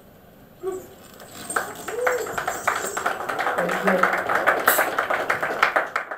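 Small club audience clapping and cheering, starting about a second in and building to a dense applause with voices shouting over it.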